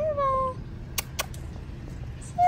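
A short, meow-like animal call, falling slightly in pitch and lasting about half a second, followed about a second in by two sharp clicks.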